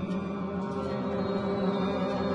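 Symphony orchestra holding a dense, low, droning chord of many sustained notes, steady and unbroken, in a contemporary classical piece.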